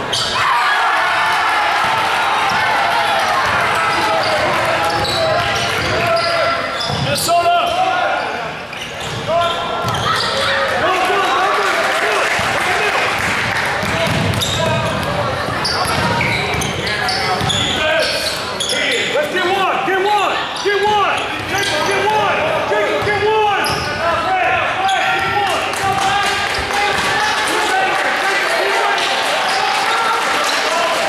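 Crowd chatter and calls echoing around a gymnasium during a basketball game, with a basketball bouncing on the hardwood floor at times.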